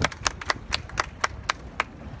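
A small crowd clapping: sharp, separate hand claps about four a second, stopping near the end.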